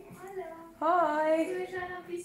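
A high voice singing in long, drawn-out notes that glide in pitch, louder from about a second in.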